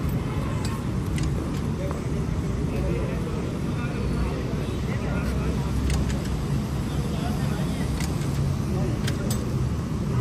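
Steady low rumble of background noise at a cricket ground, with faint distant voices and a few light clicks scattered through it.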